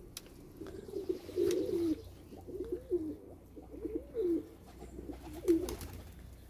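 Domestic pigeons cooing: a run of low coos that rise and fall in pitch, one after another about once a second, with a few faint clicks among them.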